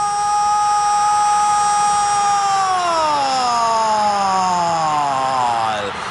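A football commentator's long held "goool" goal shout: one steady high note that after about two and a half seconds slides slowly down in pitch, dropping in level just before the end.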